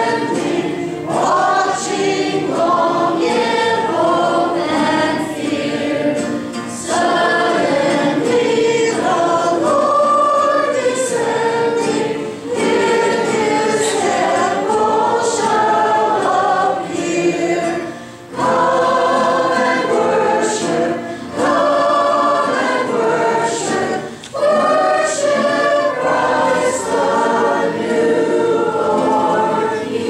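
A small group of girls singing a Christmas carol to the accompaniment of two acoustic guitars, with short breaths between phrases.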